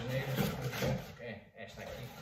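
Cardboard rubbing and scraping as a small cardboard box is pulled out of a larger shipping box, with a man's voice over the first half.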